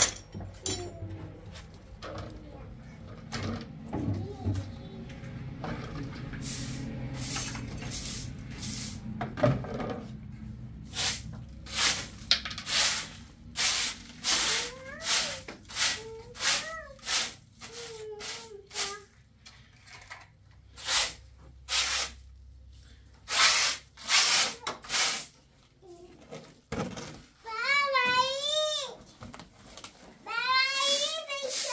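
Short straw hand broom sweeping debris off a floor, a quick series of brisk brushing strokes. Near the end, a high wavering call is heard.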